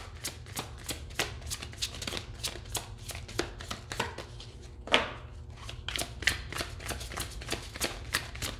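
A deck of tarot cards being shuffled by hand: a steady run of short card slaps and flutters, several a second, with one louder slap about five seconds in.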